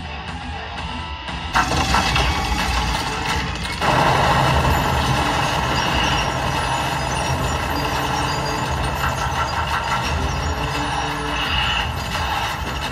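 A film soundtrack played in a cinema and picked up by a phone. It is music at first, then about four seconds in it becomes a loud, dense, continuous din of heavy machine-gun fire with music still under it.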